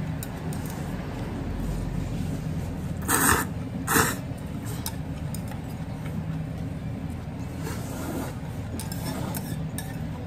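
Noodles slurped twice in short loud pulls about three and four seconds in, with light clicks of chopsticks against a small metal cup, over a steady low hum.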